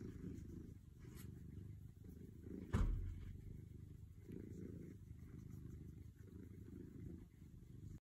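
A tabby cat purring steadily while having its chin scratched, the purr swelling and easing in slow waves. A single thump a little under three seconds in.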